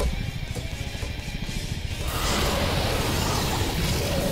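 Cartoon action soundtrack: music over a low rumble. About two seconds in, a loud rushing hiss comes in and carries on.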